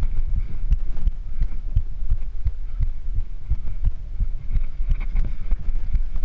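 Mountain bike rolling fast over a rough dirt and rock trail: a steady low rumble with quick, irregular thuds as the wheels and frame take the bumps, heard through the bike-borne camera.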